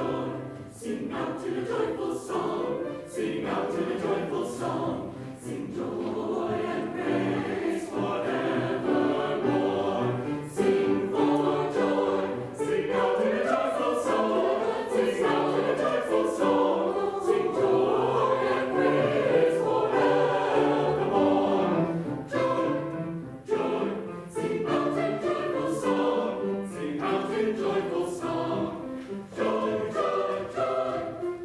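Mixed choir of men's and women's voices singing a choral piece in parts, growing louder and fuller through the middle.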